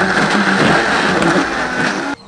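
Vitamix high-speed blender running steadily at full speed, with a strong motor whine over a loud rush, blending frozen bananas, almond milk and powders into a thick smoothie.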